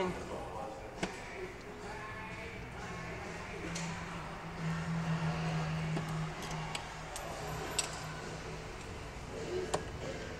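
T20 Torx screws being undone from the plastic door pull-handle bracket of a BMW door panel: a few light clicks from the driver and bracket, over a steady low hum that grows louder in the middle.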